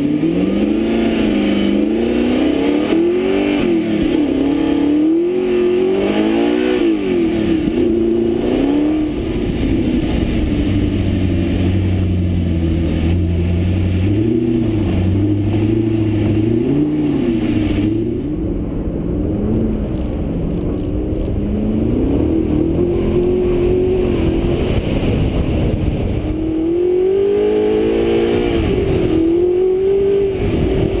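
Audi R8's mid-mounted V8 FSI engine revving up and down repeatedly under load, its pitch rising and falling again and again, with a steadier stretch in the middle.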